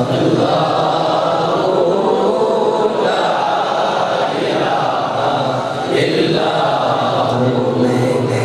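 Devotional chanting by male voice, a continuous sung recitation without a pause.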